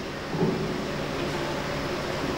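Steady background hiss with a faint low hum: the room noise of a hall, heard through a pause in amplified speech.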